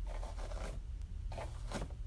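A hairbrush drawn down through a mannequin head's long hair in two strokes, the first starting right away and the second just after the middle.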